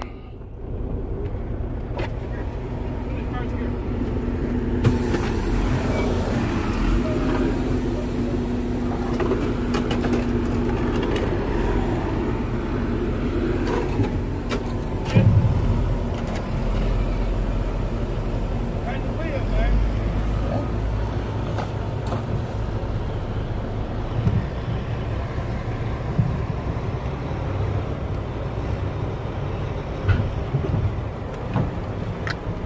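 Heavy diesel engines running steadily, heard from inside a semi-truck's cab, while the mired truck is pulled out of the mud. A few knocks, and a louder thump about fifteen seconds in.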